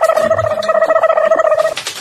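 A loud, steady buzzing tone held at one pitch for nearly two seconds, cutting off shortly before the end, followed by a few clicks.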